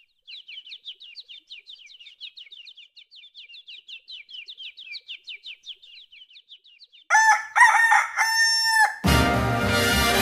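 A small bird chirping in a fast, even series of short falling notes, several a second, then a rooster crowing loudly, cock-a-doodle-doo, about seven seconds in. Orchestral music comes in just after the crow.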